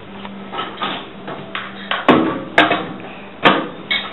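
Three sharp knocks, roughly half a second to a second apart, over a low steady hum that fades out about a second in.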